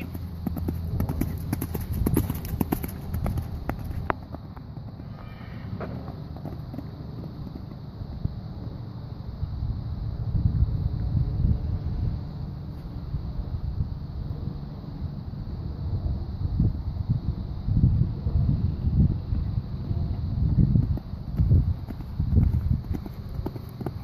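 A horse cantering on a sand arena, its hoofbeats coming as dull, irregular thuds that grow louder from about halfway on and again near the end as it comes close.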